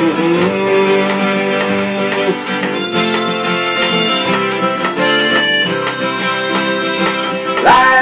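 Acoustic guitar strummed steadily under a harmonica in a neck rack playing long held melody notes; near the end one note slides sharply up in pitch.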